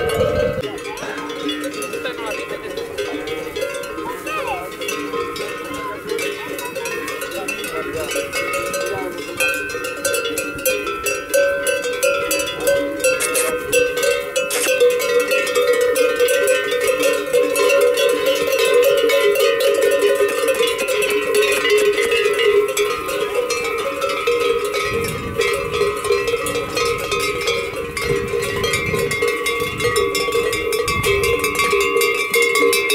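Many livestock bells clanking and ringing together without a break, worn by a herd of horses milling about. The jangle grows louder after about ten seconds.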